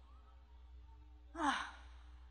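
A short pause over a low steady recording hum, then, about one and a half seconds in, a woman's breathy, sighing 'Oh' with a falling pitch, an exasperated exclamation.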